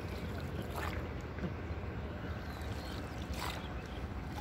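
Small wooden river boat being rowed: two short water splashes from the oar, about a second in and again near the end, over a steady low rumble.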